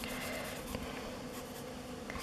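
Felt tip of a thick black Sharpie marker colouring over glossy paper, a soft, steady scratching.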